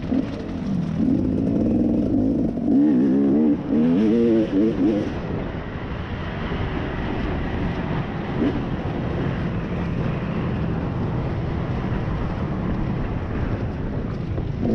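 Off-road dirt bike engine being ridden on a trail: it revs up and down repeatedly for the first five seconds or so, then runs more steadily under throttle.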